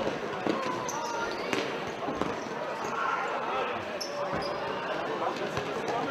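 Futsal ball being kicked and bouncing on an indoor sports-hall floor: a few sharp thuds that echo in the large hall, under players' and spectators' voices.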